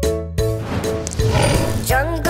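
Children's song music with a steady beat, broken about half a second in by a tiger's roar sound effect, a long rough growl laid over the music.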